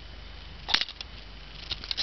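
A few small plastic clicks and clatters from a Lego Technic gear arm as its axle is turned by hand, with the gears blocked so the turning lifts the arm. The sharpest click comes about three quarters of a second in and lighter ticks follow near the end, over a faint steady hum.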